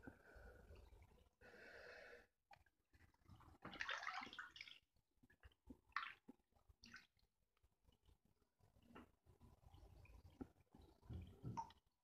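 A hand swishing through bathwater in a few faint splashing bursts. The longest and loudest comes about four seconds in.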